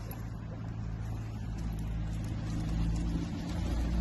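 A steady low engine-like hum, growing gradually louder.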